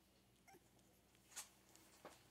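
Faint, brief squeaks from three-and-a-half-week-old Scottish terrier puppies, two short sounds, the second about one and a half seconds in and a little sharper, against a very quiet room.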